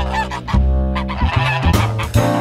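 Geese honking several times over a jazz piano and bass backing.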